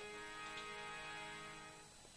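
A keyboard instrument holding one steady chord of several notes between the narrator's lines, quiet and slowly fading away toward the end.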